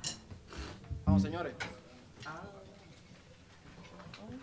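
Quiet, off-mic voices talking on a stage between songs, with a few sharp clicks and knocks.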